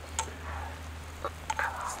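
A spatula clicking and scraping in a small coated-aluminium MSR skillet as scrambled eggs are stirred: a few light ticks and a soft scrape near the end, over a low steady hum.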